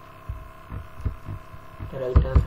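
A steady electrical hum, with a few soft low thumps.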